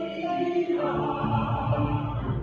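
Small mixed choir of men and women singing, holding long notes that move to a new chord just under a second in.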